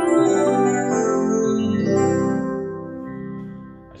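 Yamaha P125 digital piano playing its DX-style FM electric piano voice: sustained chords that ring on and fade away over the last second or so.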